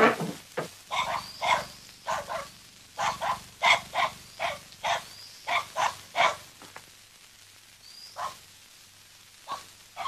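A dog barking repeatedly, in a quick run of short barks that thins out after about six seconds to a few single barks near the end.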